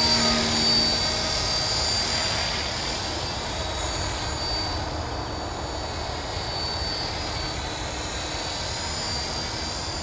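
Align T-Rex 450 radio-controlled electric helicopter in flight: a steady high whine from the motor and gearing over the rush of the rotor. It is loudest in the first second or two as it passes close, then slightly fainter as it flies off.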